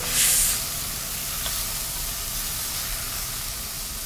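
Food sizzling in hot oil in a kadai on a stove: a sharp, loud burst of sizzle as it starts, then a steady sizzle.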